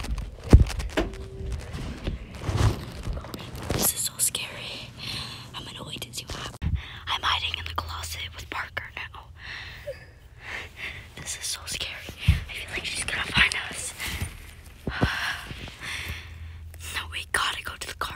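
Hushed whispering voices, with a few sharp knocks of handling noise.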